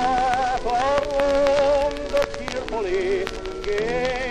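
Acoustically recorded 1915 sentimental ballad playing from a 78 rpm shellac record: a slow melody of long notes with vibrato over a thin accompaniment, with the disc's surface crackle and clicks running through it.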